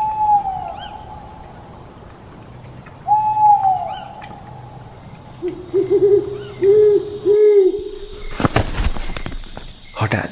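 Owl hooting as a night-time sound effect: two long, slightly falling hoots, then a quicker run of four or five lower hoots. Near the end a sudden loud noisy burst cuts across them.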